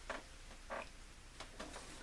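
A few faint, short mouth sounds, small clicks and smacks, as a piece of lemon is put in the mouth and tasted.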